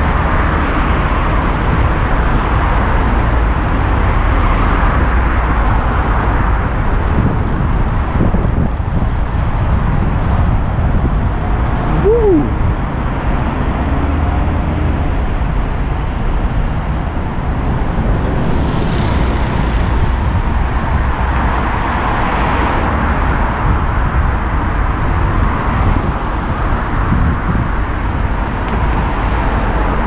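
Road traffic on a busy street: a steady wash of car engines and tyres with a deep rumble, swelling several times as cars pass close by.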